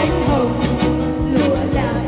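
Women's vocal group singing a Vietnamese pop ballad into handheld microphones over a pop band backing track.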